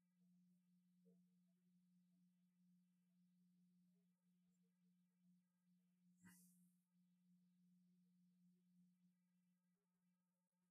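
Near silence: a faint steady low hum, with one faint click about six seconds in.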